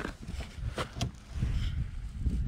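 A few light clicks and knocks from a hand handling a loosely fitted plastic bumper cover, over a low rumbling noise.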